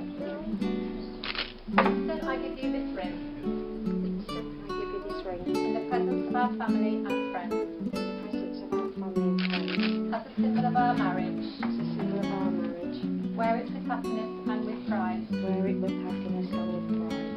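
Music with acoustic guitar, playing steadily as a run of held notes.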